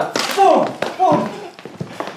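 Several men calling out in short wordless cries, with a few sharp thuds and knocks in between.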